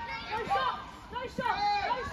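Several voices on and around a football pitch shouting short, high-pitched calls over one another during play.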